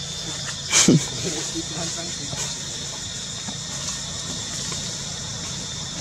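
Steady high-pitched forest insect drone, with one short, loud sound about a second in that slides down from high to low pitch, and faint voices in the background.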